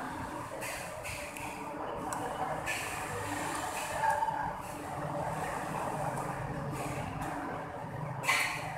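A person eating noodles by hand close to the microphone: chewing and small clicks of food and fingers, loudest about four seconds in as a handful goes into the mouth. Under it runs a steady background rumble.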